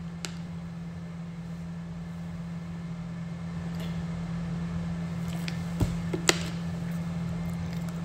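A person chugging a drink from a plastic bottle: quiet swallowing over a steady low hum, with a couple of short sharp clicks about six seconds in.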